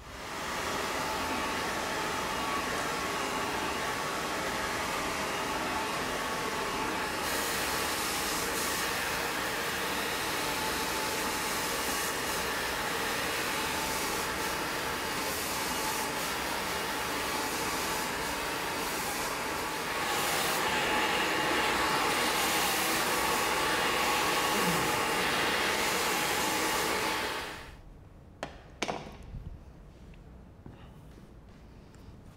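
Handheld hair dryer blowing steadily on long hair, with a faint motor whine under the rush of air. It gets a little louder about two-thirds of the way through and is switched off near the end.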